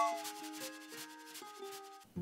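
The tail of an intro jingle: a few held musical notes fading away under a soft hissing sound effect, dying out just before the end.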